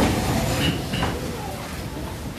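A chair moving on a tiled floor as a man gets up from a table, with two short high squeaks about half a second and a second in.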